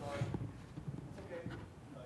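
Faint voices heard off-microphone, with scattered soft low knocks and thumps in between.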